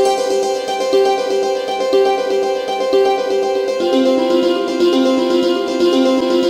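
RDGAudio Santoor and Dulcimer 2, a sampled santoor and hammered-dulcimer virtual instrument, playing a factory preset: a held drone note under a repeating struck-string phrase, with notes about once a second. About four seconds in, a busier, lower run of notes joins the phrase.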